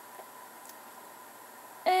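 Quiet room tone with a faint steady high-pitched hum and one soft tick just after the start; a woman starts speaking near the end.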